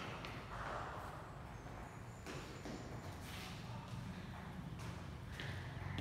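Low room hum with a few scattered light knocks and footsteps on a hard gym floor.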